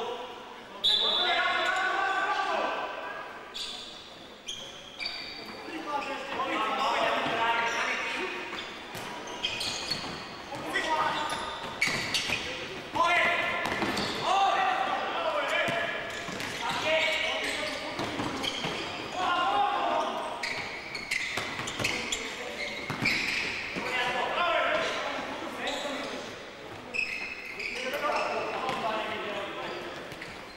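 Voices calling and shouting across a reverberant sports hall during play, with repeated knocks of a futsal ball being kicked and bouncing on the hard court floor.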